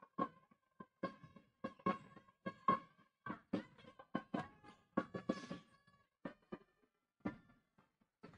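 Court sounds of an indoor basketball game: a run of short, sharp knocks and squeaks, about two a second, from the ball bouncing on the hardwood floor and players' shoes.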